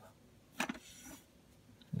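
A small brush swept once across a model locomotive's tender to dust it: a light knock, then a short hissing swish lasting about half a second.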